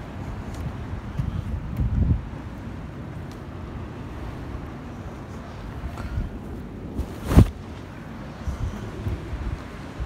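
Wind buffeting the microphone of a hand-held camera, an uneven low rumble, with one sharp knock about seven seconds in.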